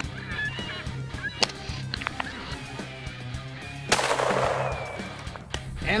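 A hunting rifle shot about four seconds in, ringing out for about a second. Before it come a few short, high, gliding cries and sharp clicks, over background music.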